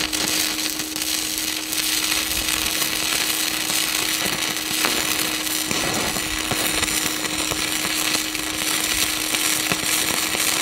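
Stick-welding arc crackling steadily as a 7018 AC electrode burns on a Vevor MIG-200D3 inverter welder in stick (DC) mode, laying a bead on steel plate. A steady hum runs underneath.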